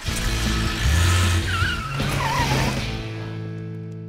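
Cartoon sound effect of a car pulling away fast: a loud rush of engine rumble with wavering tyre squeal that fades out after about three seconds. Held notes of background music run underneath.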